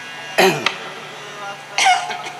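Two short, loud vocal bursts from a man at a stage microphone, one about half a second in and one near the end, each with a falling pitch.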